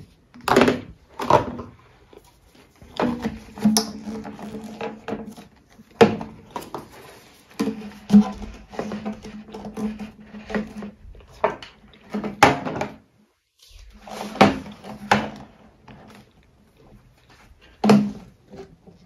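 Grey plastic sewer pipes and fittings knocking and clacking as they are fitted together and set down on a wooden workbench, in a string of irregular knocks. Stretches of a steady low tone run under the knocks at times.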